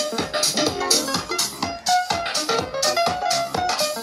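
House music with a steady beat, about two beats a second, and melodic keyboard and guitar-like notes, played over loudspeakers for dancing.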